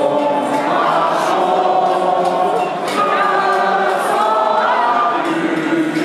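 A crowd of many voices singing together in unison, holding long notes that step from one pitch to the next.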